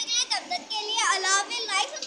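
A boy talking.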